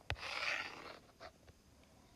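A stylus taps onto a tablet screen and slides round in one scratchy stroke lasting about a second as a circle is drawn, followed by a couple of faint ticks.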